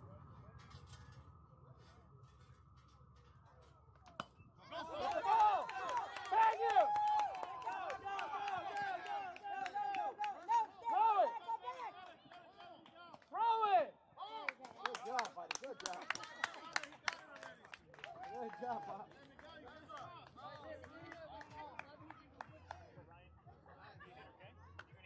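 Many voices shouting and cheering at once, high-pitched as of young players and spectators, breaking out about four seconds in after a quiet start, with a few sharp claps or knocks among them.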